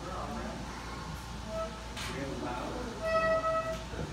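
Bagpipes sounding two brief steady notes as the bag is blown up: a short one about a second and a half in, and a longer, louder one near the end, over murmured voices.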